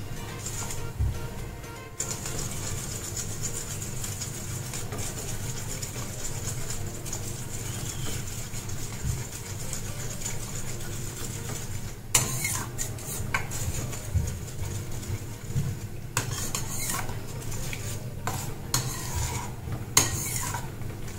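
Steel ladle stirring and scraping in a stainless steel kadhai of hot soup as beaten egg is stirred in, with a few short bursts of scraping in the second half over a steady low hum.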